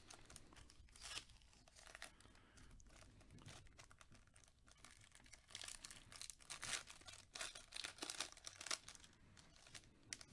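Foil trading-card pack wrapper crinkling and tearing as it is opened by gloved hands, faint and irregular, with denser, louder crinkling in the second half.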